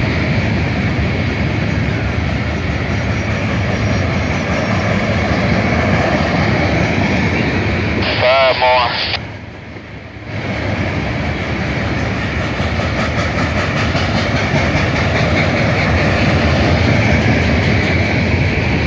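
Freight cars of a long freight train rolling past close by: a steady rumble and rush of steel wheels on rail, with a steady ringing band in the wheel noise. The level dips briefly about nine seconds in.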